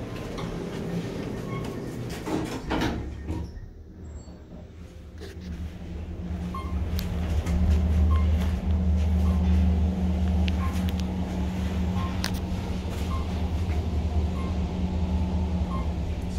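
Otis traction elevator car travelling upward: a steady low rumble builds over a few seconds as the car gets under way, then holds. Faint short ticks come about once a second, one for each floor passed. There is a brief thump about three seconds in.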